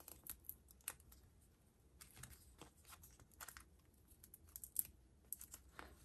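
Faint, scattered clicks and rustles of foam adhesive dimensionals being peeled from their backing sheet.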